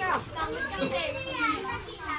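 Children's voices calling out and chattering while they play, high-pitched and rising and falling in pitch.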